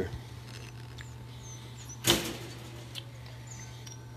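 A folded metal wire dog crate clacks once about halfway through, a short clank of wire with a brief ring-out, over a steady low hum.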